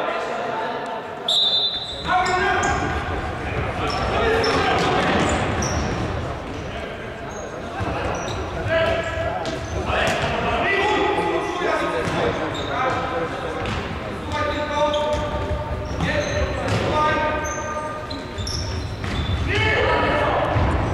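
A futsal game in a sports hall: the ball being kicked and bouncing on the wooden floor, with short high shoe squeaks and players shouting to each other, all echoing in the large hall.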